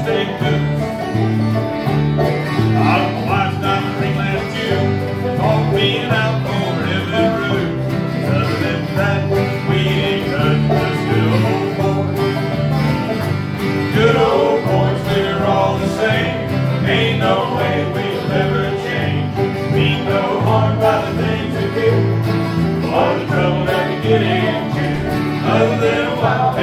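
Live bluegrass band playing: banjo, acoustic guitars and mandolin over a bass line that alternates between two low notes on the beat.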